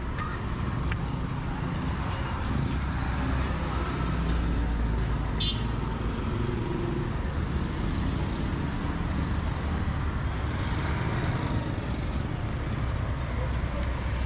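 Road traffic passing close by: cars, motorcycles and a minibus, a steady rumble of engines and tyres. A brief high squeak cuts in about five seconds in.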